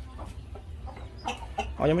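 Gamecock rooster clucking to the hen, a few short clucks after about a second; a man's voice begins near the end.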